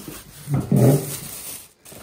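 A short vocal sound, rising and then falling in pitch, about half a second in.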